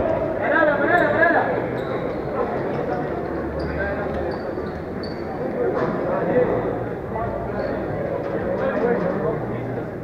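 Voices shouting and calling in a large, echoing sports hall during a handball game, with a loud shout about a second in. A handball bounces on the court floor now and then, and a few short high squeaks come near the middle.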